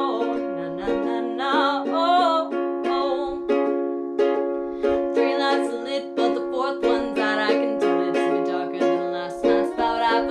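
Ukulele strummed in steady chords, with a voice singing over it in stretches.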